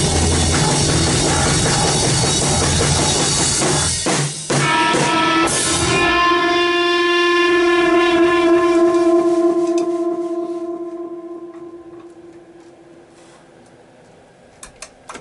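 Rock band of drums, electric guitar and bass guitar playing loud, breaking off about four seconds in. After a last hit, one guitar note is held from about six seconds and rings out, fading away as the song ends.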